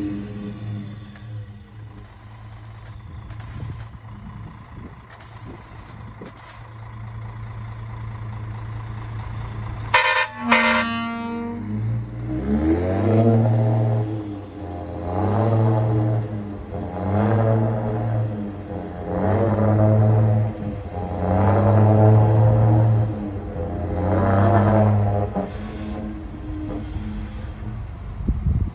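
Mercedes-Benz Axor 1840 truck running, with a brief loud burst about ten seconds in; then its singing exhaust whistle, worked by a button, blows six long, deep, horn-like notes in a row, each sliding up into pitch at its start.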